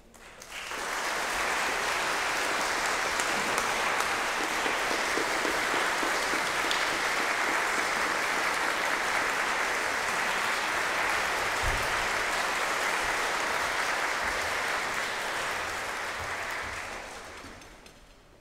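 Audience applause in a large concert hall, starting about half a second in, holding steady, then dying away near the end.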